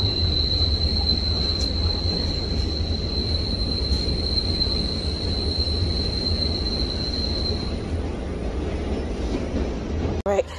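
Passenger rail car running, heard from inside, with a loud low rumble and a steady high-pitched squeal that stops near the end.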